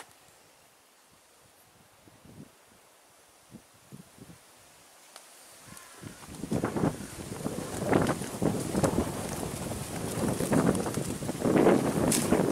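Almost quiet at first, with a few faint ticks; about halfway through, wind starts buffeting the microphone in irregular gusts, with leaves and grass rustling.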